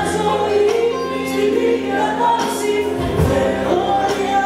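Live band playing a Greek song on acoustic and electric guitars and bass, with singing held on long notes.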